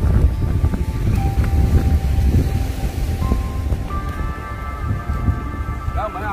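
Wind buffeting the microphone as a heavy, gusty rumble, under background music of long held notes.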